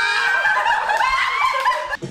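Several people laughing loudly together, one voice holding a high-pitched squeal over the others. The laughter breaks off sharply just before the end.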